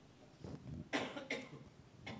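A person coughing a few short times, starting about half a second in.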